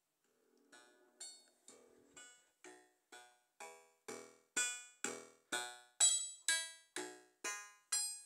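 Intellijel Shapeshifter oscillator on a Eurorack modular synthesizer playing short plucked notes in percussive mode, about two a second at 125 bpm. Each note decays quickly and the pitch changes from note to note, with the notes triggered by the Chaos Computer's gate. The dry signal fades up and grows louder over the first few seconds.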